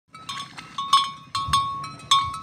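Neck bell of a grazing water buffalo clanking irregularly: about seven strikes in two seconds, each ringing briefly at the same pitch.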